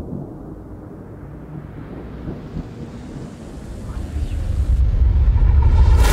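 Trailer sound design: a deep rumble under a rising whoosh that climbs in pitch and swells steadily louder, building to its loudest in the last second or two.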